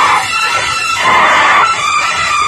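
Loud DJ music from a large outdoor sound system, with a shrill high-pitched lead that swells twice, around the start and again about a second in.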